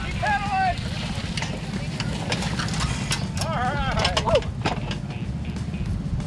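High-pitched shouts from young spectators, twice: once about half a second in and again about three and a half seconds in. They sound over a steady low rumble and scattered clicks and knocks.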